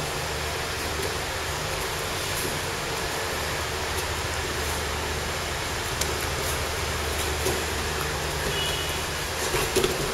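Steady hum and whoosh of electric fans running in the room, with a few faint scuffs near the end.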